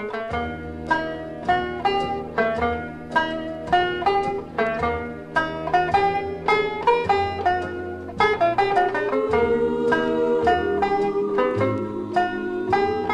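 Instrumental break in a vocal-and-orchestra pop record: a banjo picks the melody in quick plucked notes over held orchestral chords.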